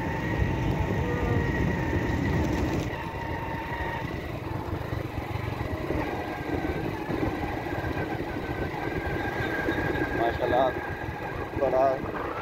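Wind buffeting the microphone while riding on a motorcycle at road speed, with the engine running underneath; a voice breaks in briefly near the end.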